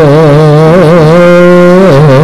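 Javanese wayang kulit music: a single sustained melodic line with a wide, wavering vibrato, holding long notes and stepping down in pitch near the end.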